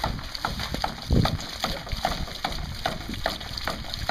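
Homemade PVC hydraulic ram pump cycling on its own: its waste valve clacks shut in a steady rhythm, a little over two strokes a second, with water spurting and splashing out of the valve between strokes.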